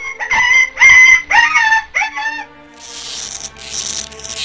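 A rooster crowing: one cock-a-doodle-doo of several rising and falling notes lasting about two seconds. A hissing noise follows in the second half.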